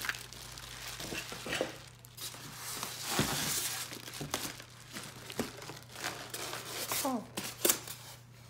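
Clear plastic bag crinkling and polystyrene foam packaging rubbing as the foam end blocks are pulled off a bagged espresso machine, loudest about three seconds in.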